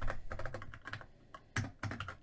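Typing on a computer keyboard: a quick run of keystrokes, then a few more near the end.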